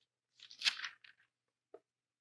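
Faint rustle of thin Bible pages being turned, lasting about half a second, followed by a small click near the end.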